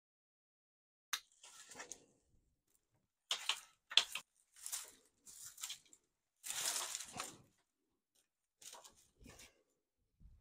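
Dry, thin cane sunshade matting rustling and crackling in a string of irregular bursts as it is pulled down by hand from a pergola; the longest and loudest burst comes about two-thirds of the way in.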